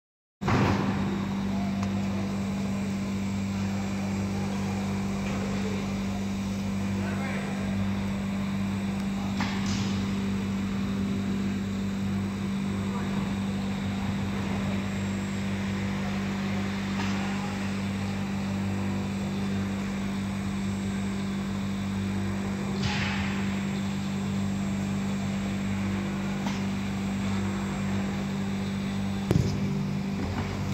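Steady low machine hum with a few brief knocks and clatters, one about a third of the way in, another later on and a third near the end.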